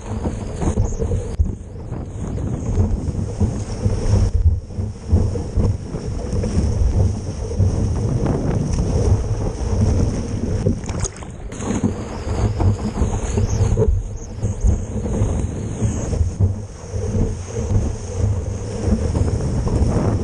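Seawater rushing and splashing over a surfboard's nose and the board-mounted camera, with heavy wind buffeting on the microphone, as the board is paddled into a wave and then rides it. The rumble rises and falls unevenly, with a few brief muffled dips.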